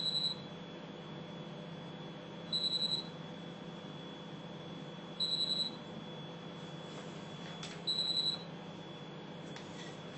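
Microwave oven running with a steady hum while it puffs crackers. A short, high electronic beep sounds four times, about every two and a half seconds.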